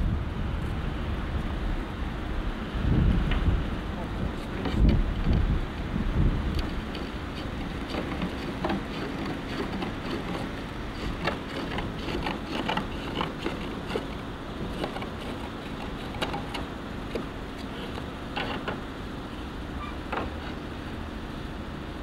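Natural roof slates being cut and trimmed by hand with a slater's hammer (zax): scattered sharp taps and knocks over a steady outdoor rumble, the rumble heaviest in the first few seconds.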